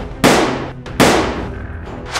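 Gunshot sound effects: two sharp shots less than a second apart, each trailing off in a long echoing tail.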